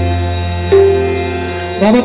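Aarati devotional music with a steady deep drone and long held notes that slowly fade. A voice comes in near the end.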